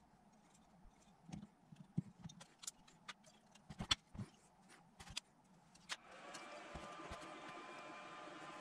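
Light metallic clicks and knocks of alternator parts being handled and fitted into the rear housing, scattered through the first six seconds. A faint steady hiss sets in about six seconds in.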